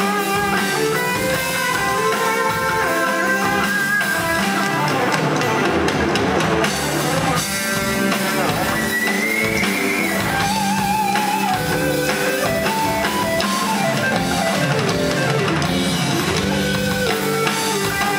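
Live rock band playing an instrumental passage with no vocals: guitars, bass guitar and drum kit. A melody line rises in pitch about nine seconds in.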